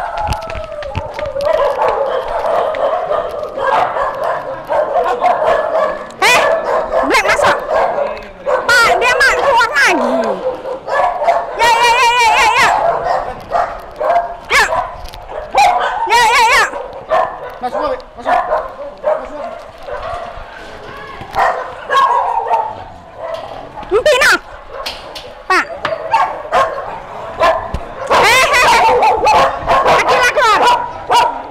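A large pack of mixed-breed dogs barking and yipping in many short overlapping calls, with whining cries among them.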